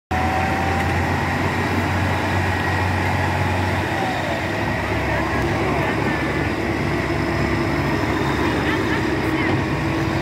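A tracked armoured vehicle's engine runs steadily with a deep low hum. About four seconds in its note changes as the vehicle pulls forward and turns.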